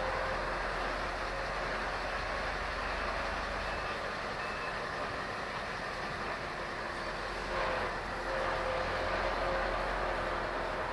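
Articulated lorry's diesel engine running steadily at low speed through a tight turn, heard from inside the cab.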